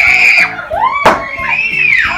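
Children shrieking several times, loud and high, over background music with a steady beat. There is one sharp knock about a second in.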